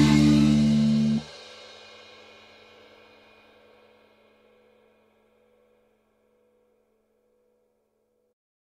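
Final held chord of a heavy-metal backing track with drum kit, cut off sharply about a second in. A cymbal is left ringing, fading out over the next few seconds into silence.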